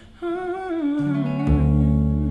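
Wordless hummed vocal line with vibrato over a Gibson semi-hollow electric guitar and an upright double bass, entering just after a brief pause. A low bass note comes in about a second in, and a louder, fuller chord about half a second later.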